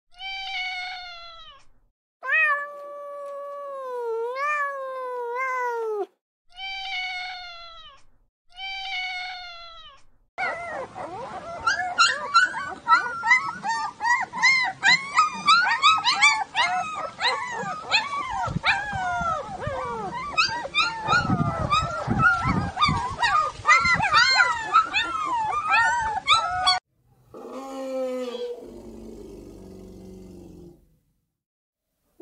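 A domestic cat meowing four times, the second meow long and wavering in pitch. Then a litter of puppies whining and yelping together in a dense, continuous chorus for about sixteen seconds. A separate falling call comes near the end.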